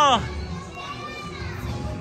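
Children's voices in the background over music, after a nearby voice ends right at the start.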